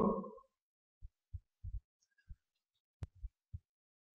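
Near silence broken by a few faint, short low thumps, like light knocks on a desk or microphone, and one sharp click about three seconds in.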